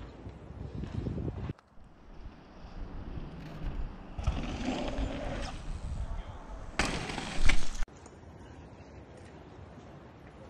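Mountain bikes rolling over dirt jump trails, tyre noise on packed dirt mixed with wind on the microphone. The sound changes abruptly several times, and the loudest part is a short burst of noise between about seven and eight seconds in.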